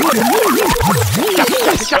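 A DJ scratching a sound back and forth on a Pioneer CDJ jog wheel with the track's bass beat cut, so that it swoops up and down in pitch about four times a second.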